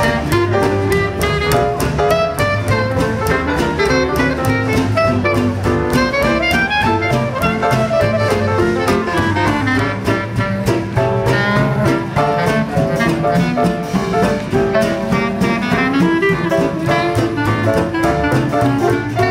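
Small traditional New Orleans-style jazz band playing a swinging tune, with a clarinet carrying the melody over piano, acoustic guitar and string bass.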